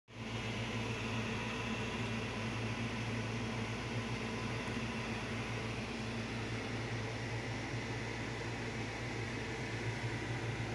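Steady low machine hum with an even hiss over it, unchanging throughout.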